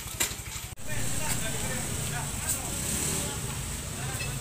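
A small motorcycle engine running at idle, an even low pulsing, with people talking indistinctly over it. The sound drops out briefly under a second in, then the engine rumble and voices carry on.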